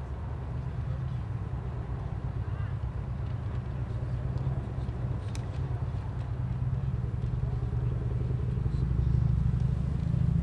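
Low, steady outdoor rumble that slowly grows louder toward the end, with a faint click about five seconds in.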